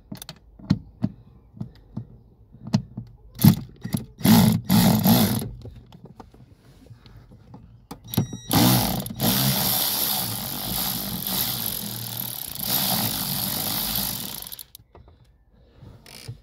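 A cordless ratchet runs for about six seconds, undoing a 10 mm nut on the accelerator pedal box, with a short burst just before the main run. Before that come several clicks and knocks as the ratchet and extension bar are fitted onto the nut.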